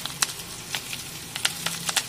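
Stuffed rava masala idli rolls shallow-frying in oil in a nonstick pan: a soft, steady sizzle with scattered sharp pops and crackles, about nine in two seconds.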